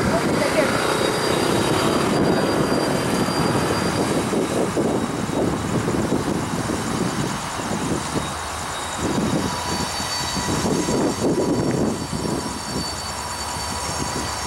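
Freight train of covered grain hoppers rolling past close by behind Canadian Pacific diesel locomotives: a steady rumble and clatter of steel wheels on the rails, with a thin high squeal in places.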